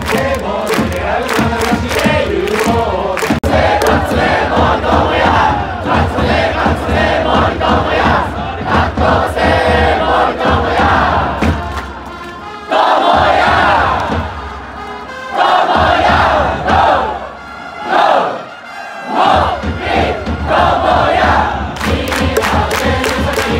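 Baseball cheering section singing a player's cheer song in unison to a steady beat. After a short lull a little past halfway, it breaks into shorter bursts of chanting.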